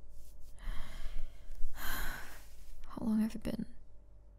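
A woman's close-miked breath, drawn in and let out as a sigh, followed about three seconds in by a short, soft voiced murmur.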